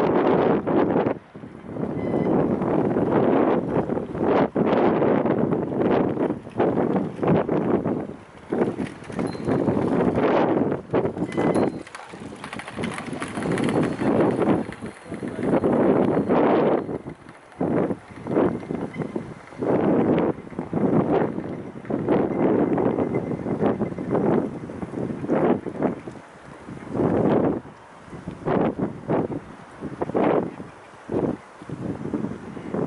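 Strong wind buffeting the microphone in irregular gusts, with short lulls between them.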